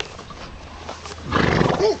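Dogs barking: after a quieter first second, a loud burst begins, ending in two short barks close together.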